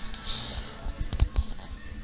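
Background music from a television music channel, with a few knocks and thumps from the camera being handled and grabbed about a second in.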